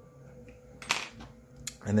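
A steel hex key set down on a cutting mat: a sharp metallic clink with a brief high ring about a second in, then a smaller click a little later.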